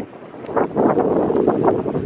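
Wind buffeting the camera microphone in irregular gusts, after a short lull at the very start.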